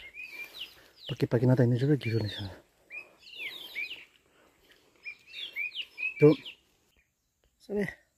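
Small birds chirping in several quick runs of short high notes. A man's voice speaks briefly a second or so in and makes a couple of short sounds later, the loudest just after six seconds.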